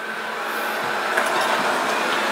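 Kyvol Cybovac E20 robot vacuum running: a steady whir with a faint high whine, growing slightly louder.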